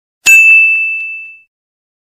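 A single bright, bell-like ding sound effect, struck once about a quarter second in and ringing for about a second before it fades out.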